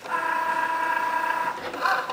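Cricut Joy cutting machine's motors running with a steady whine as its rollers move the card mat and envelope at the start of a marker drawing job, the sound changing near the end.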